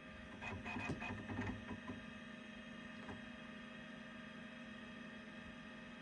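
Macintosh SE computer running with a steady hum from its cooling fan and hard drive, with a few soft clicks in the first second and a half and one more about three seconds in.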